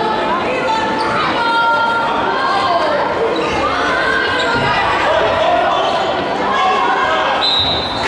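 A handball bouncing on a sports-hall floor during play, among the voices of players and spectators.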